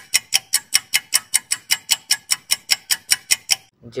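Clock-ticking sound effect for a quiz countdown timer: sharp, evenly spaced ticks, about five a second, stopping shortly before the end.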